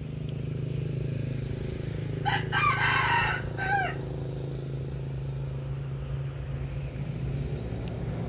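A rooster crowing once, about two seconds in, the call ending on a falling note, over a steady low hum.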